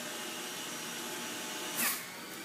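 Breville BJE200XL electric juicer running steadily, its spinning cutting disc shredding an apple pushed down the feed chute. It is briefly louder near the end.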